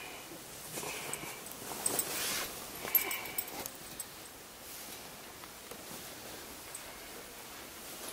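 A mobile phone's text-message alert: short high chime tones about a second in and again near three seconds. Between them, bedding rustles as someone shifts under the covers.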